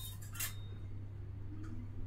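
A short click or clink about half a second in and a fainter tick later, over a steady low hum.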